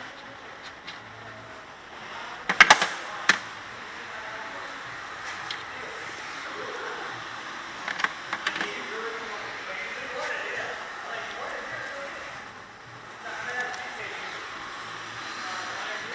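A few sharp metallic clinks of hand tools and parts: the loudest cluster about two and a half seconds in, another about eight seconds in. Under them runs steady auto-shop background noise with faint voices.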